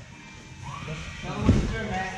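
Voices with music playing in the background, and a brief sharp thump about one and a half seconds in.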